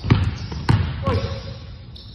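A basketball bouncing twice on a wooden gym floor, two thuds about half a second apart.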